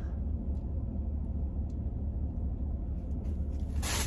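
Steady low rumble inside a car cabin, typical of the engine idling, with a brief handling noise from the plastic-wrapped fabric package near the end.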